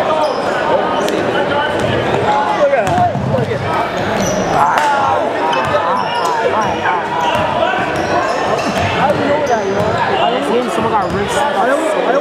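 A basketball being dribbled on a hardwood gym floor, scattered bounces heard under steady, overlapping chatter and shouts from the spectators in an echoing gym.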